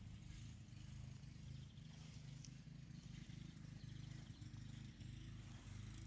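Near silence: only a faint low hum.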